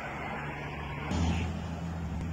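A motor vehicle engine running close by in a street, a steady low hum over street noise, growing louder about a second in.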